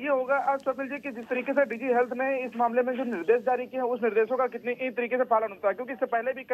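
Speech only: a man talking continuously over a phone line, the voice sounding narrow.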